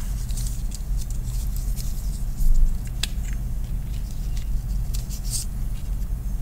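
Cut paper strips being picked up and handled, giving a few brief rustles and light ticks, the loudest about halfway through, over a steady low hum.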